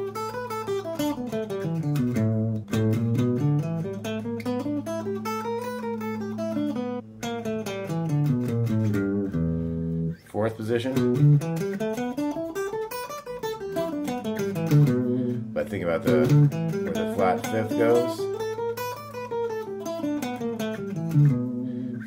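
Electric guitar playing single-note E minor pentatonic blues-scale runs, with the flat fifth added, picked up and down the scale position and back again, over a steady low tone. There is a short break about ten seconds in.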